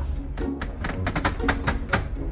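Wooden library bookcases and their cabinet doors creaking and clicking in quick, irregular ticks as the ship rolls in a heavy swell, with soft music underneath.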